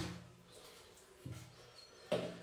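Mostly quiet room, with a short faint low sound a little past halfway and a few faint ticks near the end as a plastic tub of paste is handled.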